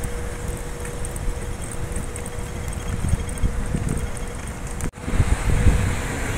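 Wind buffeting a phone microphone over outdoor street ambience, with a faint steady hum underneath. The sound drops out for a moment about five seconds in, then resumes.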